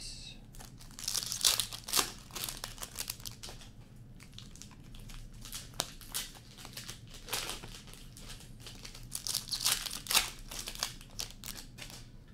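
Hockey card pack wrappers crinkling and being torn open, busiest about a second in and again about nine seconds in, with small clicks of cards being handled in between.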